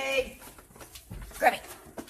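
A small dog giving short, high-pitched yelps, about one and a half seconds in and again at the very end.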